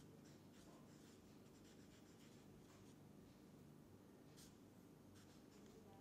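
Faint scratching of a felt-tip marker writing on paper in short, scattered strokes, over near-silent room tone.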